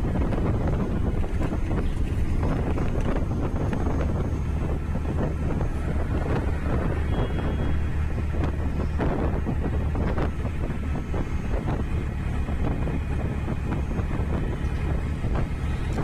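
Steady wind rushing over the microphone, with the low rumble of a vehicle's engine and tyres moving at road speed on a highway.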